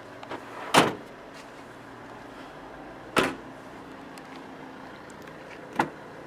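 Heavy clunks of the Volvo XC90's tailgate and doors being shut and opened: a loud slam about a second in, another about three seconds in, and a lighter one near the end, over a faint steady hum.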